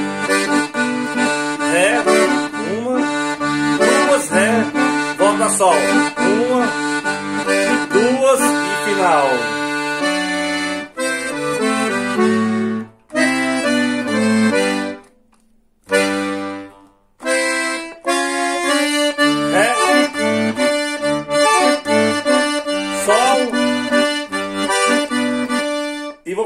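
Piano accordion playing a fast, rhythmic sertanejo-style "batidão" intro: a right-hand melody on the keys over a left-hand bass-and-chord pattern. It stops for two short breaks a little past the middle, then carries on.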